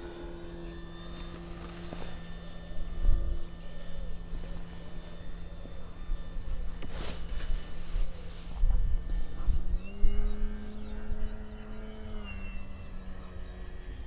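Avios Grand Tundra RC plane's electric motor and 15x8 wooden propeller on 6S, humming steadily at a distance. The pitch steps up a little with added throttle about ten seconds in, holds for about two seconds, then settles back. Low rumbles of wind on the microphone come and go.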